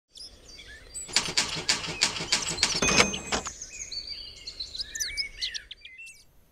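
Birds calling: short chirps and whistles, with a fast rattling run of sharp clicks during the first half.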